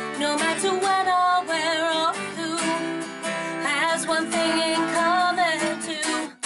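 A woman singing live, her held notes wavering with vibrato, accompanied by an acoustic guitar.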